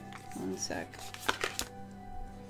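A few sharp taps or clicks in quick succession about a second in, over soft, steady background music.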